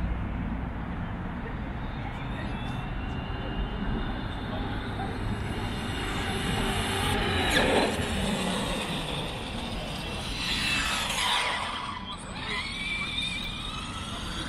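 Electric RC cars' motors whining as they race past: a loud close pass about seven and a half seconds in, then a whine that falls in pitch around eleven seconds and another wavering whine that rises near the end.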